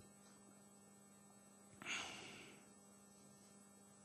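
Near silence in a pause of speech, with a faint steady electrical hum from the sound system and one brief soft noise about halfway through.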